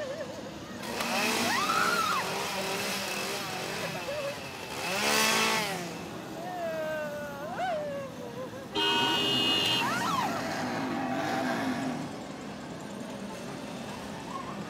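Chainsaw engine revving in repeated bursts, the loudest about five seconds in, with people's voices yelling and shrieking between the revs.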